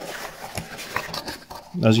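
Cardboard box being opened by hand: a quiet scraping rustle of the lid and flaps sliding apart, with a few faint clicks.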